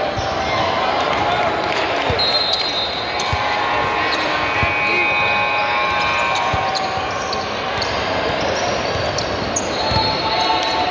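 A basketball game in a large gym: a ball dribbling on a hardwood court with repeated knocks, high sneaker squeaks, and players and spectators calling out.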